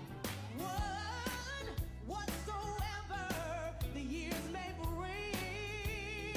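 A song in a church service: a singer with a wavering vibrato melody over a steady beat of bass and drums.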